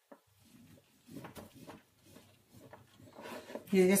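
A knife cutting through a sponge cake: faint, irregular scraping strokes of the blade through the crumb.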